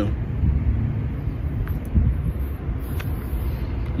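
Low, steady outdoor rumble with a couple of faint clicks.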